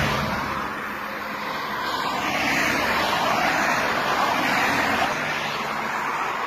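Highway traffic noise: cars passing at speed, a steady rush of tyres and engines that swells about two seconds in and holds.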